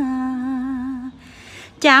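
Khmer smot chant-singing of a lullaby: a single voice holds one long, slightly wavering note that fades out about a second in, then a new sung phrase begins near the end.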